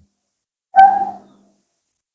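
A single short vocal sound, about half a second long, just under a second in; otherwise near silence.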